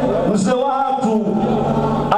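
A man's voice chanting in a drawn-out sung melody into a microphone, with held notes that glide in pitch.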